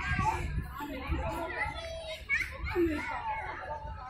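Several children's voices calling and chattering at play, with high shouts that rise and fall in pitch.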